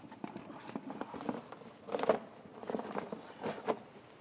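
Fabric dust cover being pulled and fitted over a plasma cutter: irregular rustling and soft handling knocks, loudest about two seconds in and again near the end.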